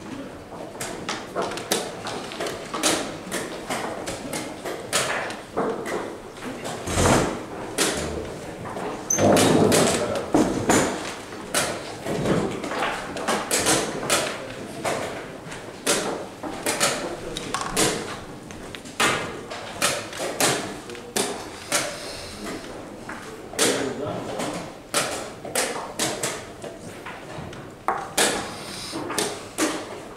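Wooden chess pieces clacking down on the board and chess clock buttons being pressed in quick alternation during a blitz game, as short sharp clicks throughout, over indistinct background voices.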